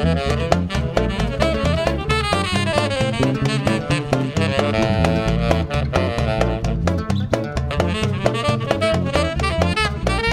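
Live band music: a saxophone plays a melody over hand-drum strokes and a low bass line.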